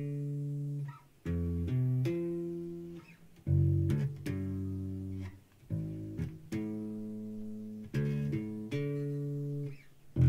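Ibanez Musician four-string bass played fingerstyle: a short bass line of plucked notes, repeated as phrases about every two seconds, each opening with a strong attack and then ringing out.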